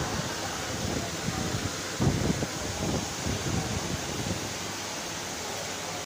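Steady background hiss, with a few short, muffled low bumps about two seconds in and again around three and four seconds.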